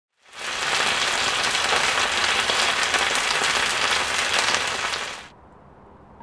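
Lamb kebab pieces sizzling hard in a hot cast iron skillet: a dense, steady sizzle that comes in quickly and cuts off after about five seconds.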